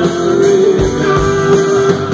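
Live country band playing an instrumental passage, guitar holding long notes over bass and drums.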